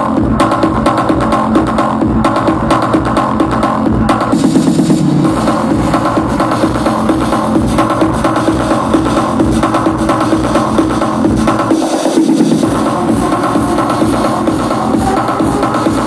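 Loud house music over a festival sound system, with a steady four-on-the-floor kick drum; the bass cuts out briefly about twelve seconds in.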